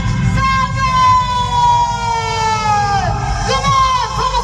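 A woman singing one long high note through the stage sound system, held for about three seconds and sliding slightly down before a new note begins near the end, over live band accompaniment.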